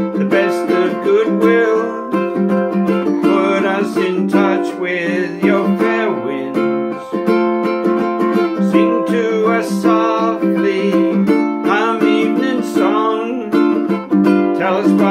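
A ukulele strummed steadily in chords, with a man's singing voice over it at times.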